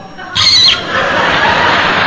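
A theatre audience reacts loudly about a third of a second in: a brief high squeal, then a steady wash of crowd laughter and noise.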